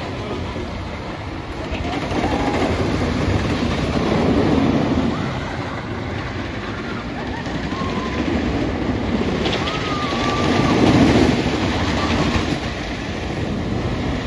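Wooden roller coaster train rumbling and clattering along its track. It swells louder twice as it passes by, once a few seconds in and again later on.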